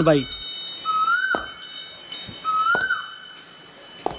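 Wind chimes tinkling: many high ringing notes struck at scattered moments and left to ring, with two short rising tones about a second in and near three seconds in, growing quieter near the end.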